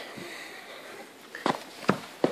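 Quiet room tone broken near the end by two short taps about half a second apart.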